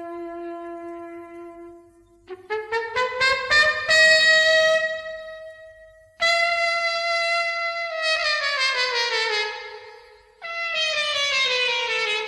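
Unaccompanied solo trumpet opening a Balkan čoček in free rhythm. It plays a quick rising run of notes up to a long held high note, then sustained notes that slowly bend downward in pitch, twice.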